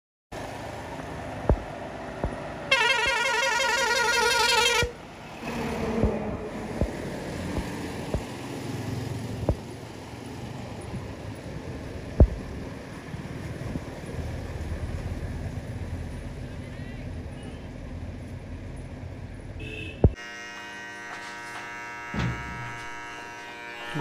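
Outdoor background sound with a vehicle horn sounding for about two seconds, its pitch wavering, a few seconds in, and scattered sharp clicks. Near the end it changes to a steady buzzing hum.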